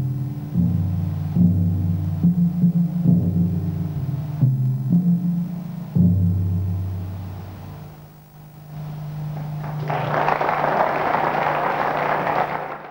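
Jazz band's closing bars: low bass notes changing about once a second, then a long held final note, with audience applause breaking out about ten seconds in.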